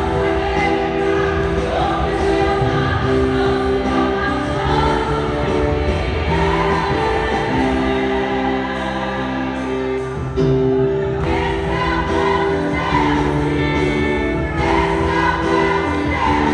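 Women's choir singing a gospel song with a live band, the voices holding long sustained notes over the accompaniment.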